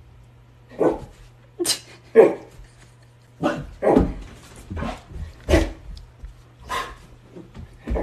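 Husky dogs barking in play: about nine short, separate barks, some sharper and higher than others.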